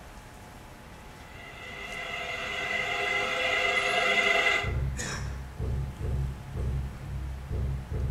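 Film soundtrack played back in a hall: a sustained chord-like tone swells up and stops abruptly about five seconds in. It is followed by a low, deep beat pulsing about twice a second.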